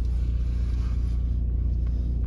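Steady low rumble inside a car's cabin as the car idles and creeps in slow traffic.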